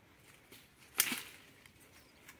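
One sharp chop about a second in: a long-handled brush-clearing blade striking into undergrowth and soil as scrub is cleared by hand.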